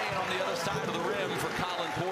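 Basketball arena sound: voices and crowd noise, with players' running footsteps on the hardwood court and a single low ball bounce about one and a half seconds in.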